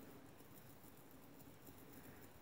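Near silence, with faint scratchy rubbing of a foam ink-blending tool worked over paper.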